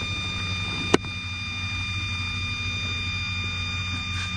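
A steady mechanical hum with a constant high-pitched whine over it, broken once by a sharp click about a second in.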